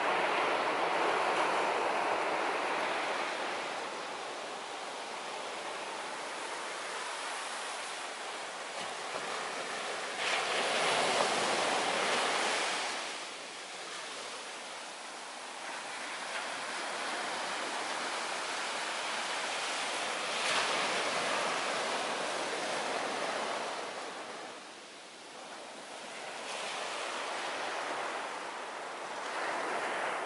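Ocean surf breaking and washing up a sand beach, a steady rush of water that swells louder several times as waves come in.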